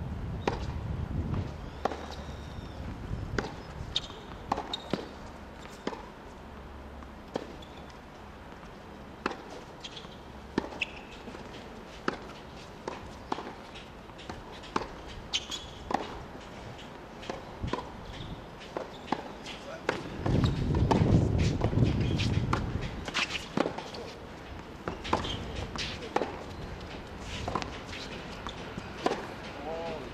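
Tennis ball bouncing on a hard court and being struck by rackets: short sharp pops at irregular intervals. A low rumble rises and fades for about three seconds in the middle.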